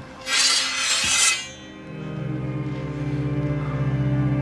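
A sword drawn from its scabbard: a loud metallic scrape lasting about a second. It is followed by low, sustained orchestral strings swelling in.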